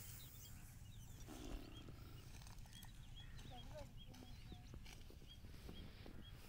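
Faint rural outdoor ambience: small birds chirping over and over with short, high calls, over a low steady rumble, with one brief thump about one and a half seconds in.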